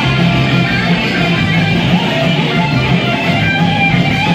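Punk band playing live and loud, electric guitars and bass driving a fast song.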